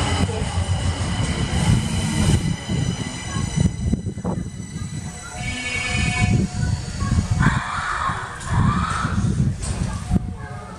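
Kita-Osaka Kyuko 9000 series subway train pulling into an underground platform and braking to a stop: steady wheel and track rumble with high electric whines from the train, one rising about six seconds in as it nears the stop.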